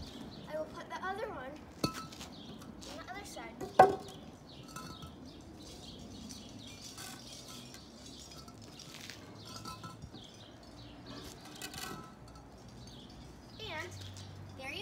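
A wooden 4x4 beam and a hollow cinder block being set in place on concrete: a sharp knock about two seconds in, then a louder clunk with a short ring about four seconds in, followed by quieter handling sounds.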